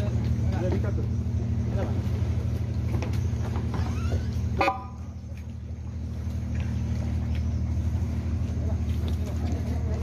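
Boat engine idling alongside a jetty with a steady low hum. About halfway through there is a short, high toot, and the hum dips briefly after it.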